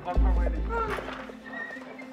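Background music cue for a comic scene: a deep bass hit just after the start that slowly fades, with short gliding tones above it.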